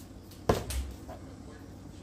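One sharp knock about half a second in, followed by a brief low thud: a small plastic seasoning container being handled over a frying pan at the stove.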